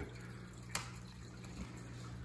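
Aquarium filter pump running: a faint, steady low hum with a light trickle of water. A single sharp click comes about three quarters of a second in.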